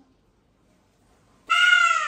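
A young child's high-pitched wail that starts suddenly about a second and a half in and falls steadily in pitch, after near silence.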